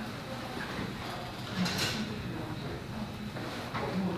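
Quiet handling noise as the threaded ring of a glass camera dome on a soft underwater housing is tightened with two small wrenches, with one brief louder scuff a little before halfway.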